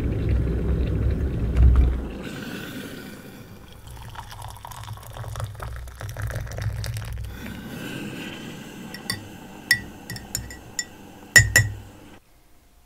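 Tea being made: water poured into a mug after a low rumble in the first two seconds, then a spoon clinking against the mug several times from about nine seconds in, the loudest clinks just before the end.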